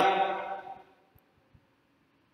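A man's voice drawing out the end of a spoken word, fading out within the first second, followed by a pause of near silence.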